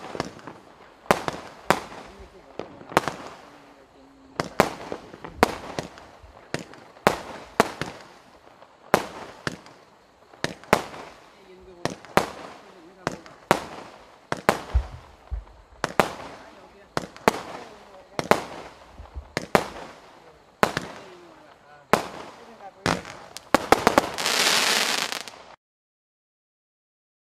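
A 25-shot Benwell 'Black Hole' firework cake firing its shots in quick succession, each a launch thump followed by a bang as it bursts, about one to two a second. It ends with a denser, louder rush of shots near the end and then stops suddenly.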